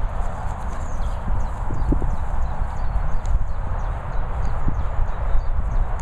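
Wind buffeting a handheld microphone outdoors: a steady, fluttering low rumble, with a few scattered light knocks.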